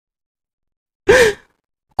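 A man's single short, breathy gasp of distress, about a second in.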